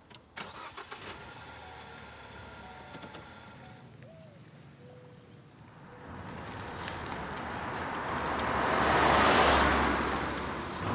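A car driving up, its engine and tyre noise growing steadily louder from about six seconds in, loudest near the end.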